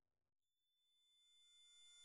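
Near silence, then about half a second in a faint cluster of steady, high electronic sine-like tones at several pitches slowly fades in and swells.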